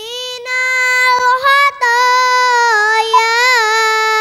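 A young girl singing into a microphone in long, held notes, with a brief break about two seconds in and a wavering turn near the end.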